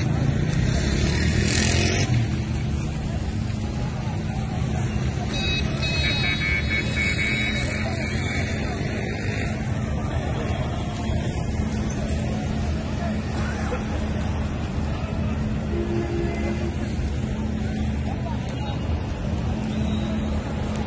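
Motor vehicle engines running at low speed in a street crowd, a steady low hum under people's voices, with a car being let through a road blockade.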